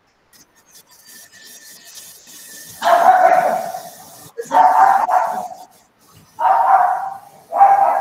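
A dog barking repeatedly over a video-call microphone: four loud barks about one and a half seconds apart, starting about three seconds in.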